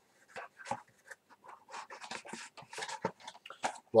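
Packaging being handled while items are taken out of a box: a run of soft, irregular rustles and small clicks.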